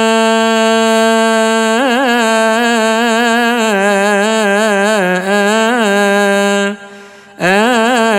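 A solo man's voice chanting the closing melisma of a Coptic Gospel reading in Arabic: a long held note, then a winding ornamented line drawn out without words. It breaks off briefly for a breath near the end and then picks up again.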